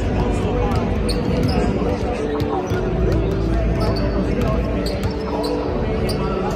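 Several basketballs bouncing on a hardwood court floor, giving irregular sharp thuds, over voices and background music in the arena.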